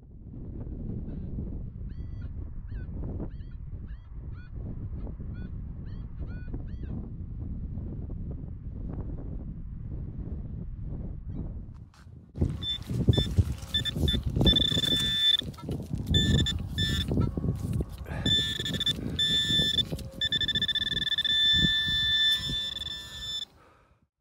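Handheld metal-detecting pinpointer sounding a high, steady electronic tone that repeatedly breaks off and starts again, over thuds and scrapes of digging in wet soil. This begins about halfway through and stops suddenly just before the end. Before it there is only a low rumbling noise with a few faint chirps.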